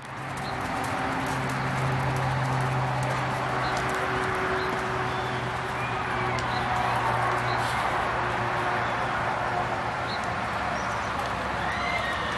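Open-air arena ambience: a steady background hiss with a low steady hum that fades about ten seconds in, and a few faint bird chirps.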